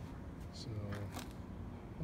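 Mostly speech: a single spoken word over a low steady background rumble, with a few faint small clicks of handling.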